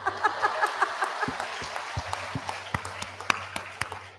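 Audience applause, starting suddenly and thinning out toward the end, with a few louder single claps standing out.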